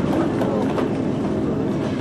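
Railroad passenger coach rolling down a steep grade with its brakes applied: a steady rumble from under the coach floor, with light clicks and faint squeaks of wheels and brakes working against the train's weight.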